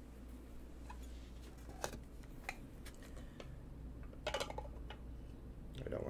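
Trading cards and a clear plastic card case being handled: faint, scattered light clicks and taps, with a brief cluster of them about four and a half seconds in, over a low steady hum.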